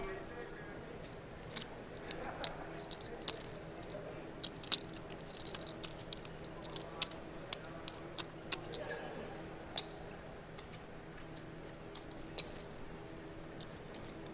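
Casino poker chips clicking at the table, a few sharp clicks a second, over a faint murmur of voices in the room.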